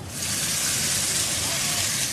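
Duck and pepper stir-fry sizzling in a hot wok, a steady hiss that comes up suddenly at the start.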